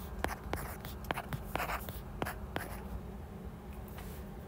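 A stylus tapping and scratching on a tablet screen while writing short letters and bond lines by hand: a quick run of light taps and brief strokes, thinning out over the last second or so.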